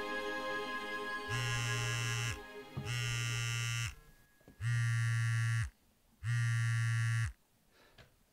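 Mobile phone vibrating on a desk for an incoming call: four buzzes about a second long each, with short gaps between them. Soft music fades out under the first buzz.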